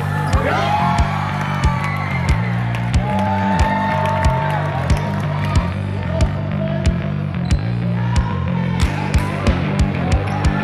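Music with a heavy, stepping bass line and a steady drum beat.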